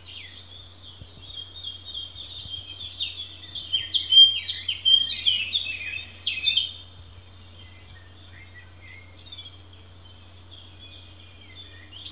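Birds singing, a rapid string of short chirping notes that is thickest in the middle and thins out towards the end, over a steady low hum.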